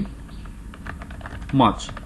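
Typing on a computer keyboard: a quick run of key clicks, as a few words are typed in.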